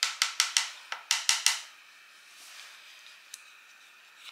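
Cut-open plastic lotion tube crackling as it is worked with hands and tools: a quick run of about eight sharp clicks in the first second and a half, then quiet handling.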